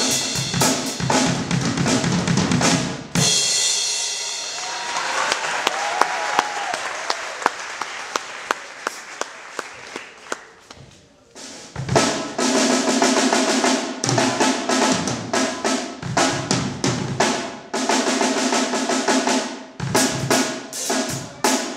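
Acoustic drum kit played with sticks: a busy groove on snare, bass drum and cymbals stops suddenly about three seconds in and rings out slowly. After a near-quiet gap the kit starts up again at about twelve seconds and plays on to the end.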